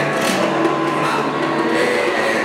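A man singing live through a microphone and PA, with acoustic guitar accompaniment.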